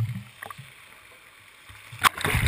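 Water in a large test basin churning after the splashdown of the Orion capsule test article. A low rumble of surging water fades within the first moment into quieter lapping, and it builds again near the end as the wave reaches the waterline camera.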